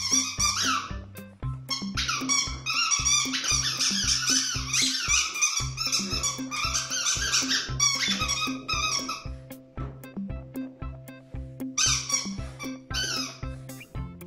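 A dog's squeaky toy squeaking rapidly over and over as a puppy chews it, in long runs with a pause in the middle. Background music with a steady beat plays throughout.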